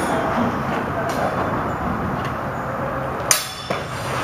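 Training longswords striking: one sharp crack of blade contact about three seconds in, followed closely by a fainter knock.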